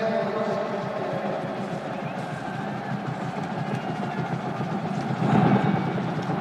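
Crowd noise in an indoor domed stadium: a steady din of many voices that swells briefly about five seconds in, around the kickoff.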